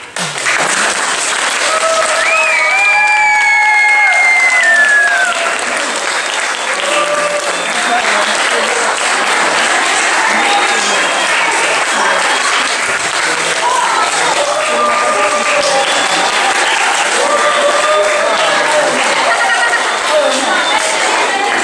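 Audience applauding, starting abruptly and keeping up steadily, with voices and a long high shout a couple of seconds in heard over the clapping.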